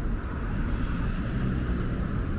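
Road traffic running past a junction: a steady low rumble of car engines and tyres.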